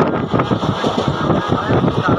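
Passenger express train running at high speed, heard from an open coach doorway: a dense, loud rumble and clatter of the wheels on the track, with wind buffeting the microphone.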